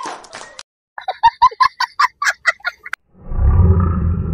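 A rapid series of about a dozen short, pitched, bird-like cackling calls, dubbed over the footage as a comic sound effect. Just before the end a loud, low rumbling noise begins.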